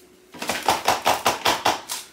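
Rapid tapping on a plastic funnel set in a plastic bottle, about seven taps a second, knocking powder down through it. The taps start about a third of a second in and stop near the end.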